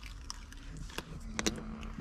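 A sticker being peeled by hand off the inside of a car windscreen: faint light handling noise with a few sharp clicks, about a second and a second and a half in. It comes off cleanly without heating.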